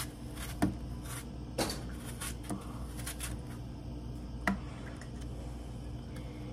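An apple being peeled by hand with a large kitchen knife: faint cutting and scraping of the skin, with a few small sharp clicks spread through, over a steady low hum.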